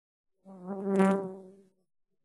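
A flying insect buzzing close past the microphone: one steady buzz that swells to a peak and fades away over about a second and a half.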